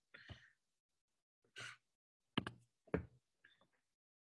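Quiet room with a few faint handling sounds: a short breath about a second and a half in, then a couple of light knocks near the end.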